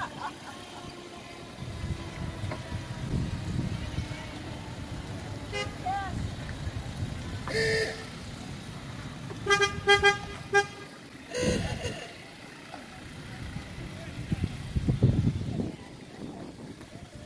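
Golf cart horns honking: one held honk about halfway through, then a quick run of short toots a couple of seconds later, over people's voices.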